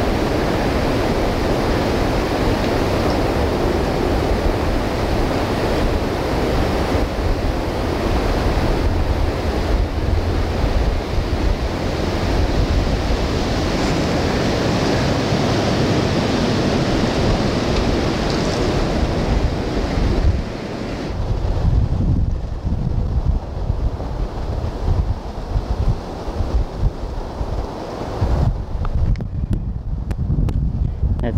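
Wind rushing through bare treetops, with wind buffeting the microphone. About two-thirds of the way through the rushing dies down, leaving mostly the low, gusty rumble of wind on the microphone.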